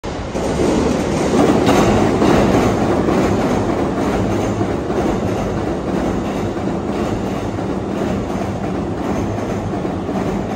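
Electric commuter train running past on the tracks: a steady rumble of wheels on rail that swells about a second and a half in, then holds steady.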